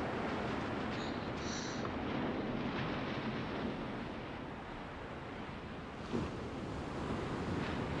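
Steady surf and wind on a beach, a continuous even hiss of waves washing ashore, with a brief thump about six seconds in.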